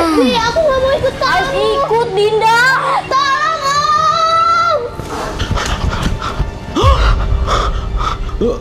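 A girl's wordless distressed cries, rising and falling, then one long high wail, over background music. A deep low sound comes in near the end.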